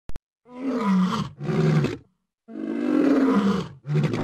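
A monster-roar sound effect for an animated vampire's snarl: two long, deep, growling roars, each dropping in pitch, after a brief double click at the start.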